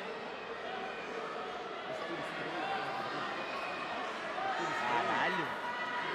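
Spectators in a sports hall talking and calling out, a steady hubbub of many overlapping voices with no clear words.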